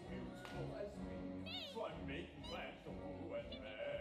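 A musical theatre number with orchestral accompaniment and voices singing. Two short, high vocal cries swoop up and then down in pitch, about one and a half and two and a half seconds in.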